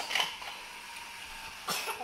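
Battery-powered toy train engines whirring along plastic track, with a short burst near the start and a sharp click about three-quarters of the way through.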